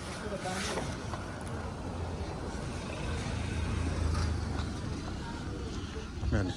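A car driving slowly past close by, its engine and tyres a low rumble that builds to its loudest about four seconds in, then eases.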